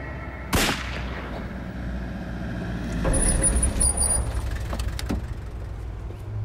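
A single sharp bang about half a second in, then a car's engine running low and rising, with a high brake squeal at about three to four seconds as the car pulls up, and a couple of clicks near the end.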